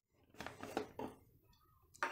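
Near silence, with a few faint soft knocks between about half a second and one second in.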